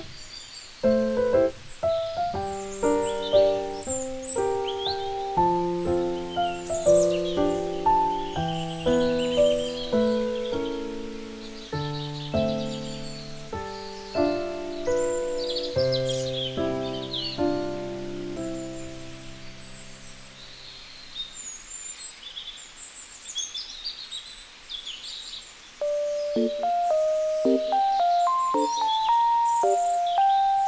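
Background music: a gentle melody of single struck notes, with birds chirping over it throughout. The melody drops away for a few seconds about two-thirds of the way in, leaving the birdsong, and comes back near the end.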